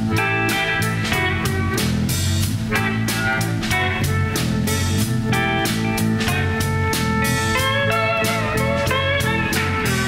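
Blues band playing an instrumental passage: electric guitars over a drum kit keeping a steady beat. In the last few seconds a lead line bends up and down in pitch.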